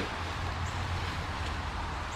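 Steady low background hum with a faint even hiss, no distinct event.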